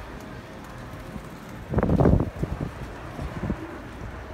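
Wind buffeting the microphone over steady outdoor street noise, with one louder gust about two seconds in.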